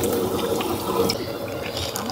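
Water running and splashing in a foot bath, a steady rushing sound around soaking feet.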